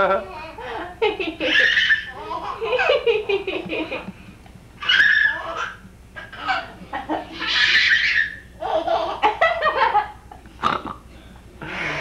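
A baby laughing in a string of bursts, some of them rising to high squeals.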